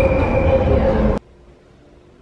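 London Underground train running, heard from inside the carriage: a loud rumble with a steady high whine over it. It cuts off suddenly a little over halfway through, leaving quiet room tone.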